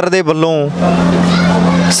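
A man's speech for about half a second, then a steady rushing noise from a motor vehicle, over a constant low hum.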